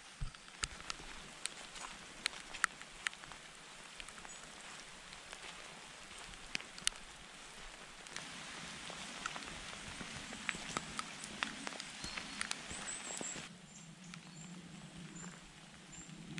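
Rain falling: a steady hiss of rain with many sharp single drops tapping close by. The hiss gets heavier about halfway through, then eases suddenly a couple of seconds before the end.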